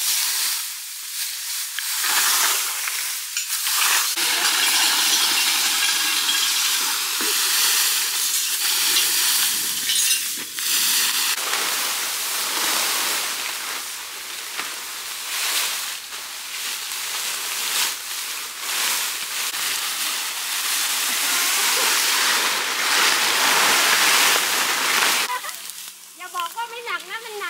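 Dry bamboo leaves crackling and rustling as they are raked and gathered into heaps, a dense, continuous crunching full of short crackles.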